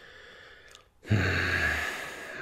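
A person's long, voiced, resigned sigh. It starts about a second in and fades away, after a faint first second.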